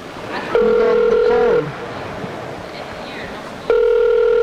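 Telephone ringback tone heard down the line on an outgoing call: two steady ring tones about a second long each, about three seconds apart, with a faint voice under the first.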